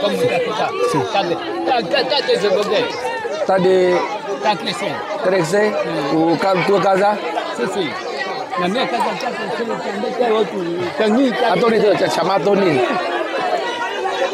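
Several people talking at once in overlapping conversation, men's voices, with no other sound standing out.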